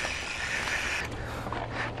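Dirt jump bike rolling over packed, rutted dirt: steady tyre and wind noise, with a few brief scuffs about halfway through.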